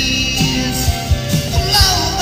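Rock-and-roll style song on a Telecaster electric guitar, with a steady beat thumping about three times a second under bending melody lines.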